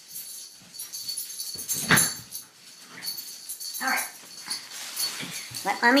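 Yorkshire terrier puppy whimpering and giving a short, loud yelp about two seconds in, eager for a new toy. Under it, the crinkly rustle of the toy's tags and packaging being handled.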